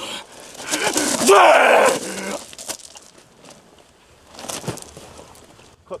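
A man's strained, wordless yell lasting about a second and a half, followed by a few short scuffling knocks a few seconds later.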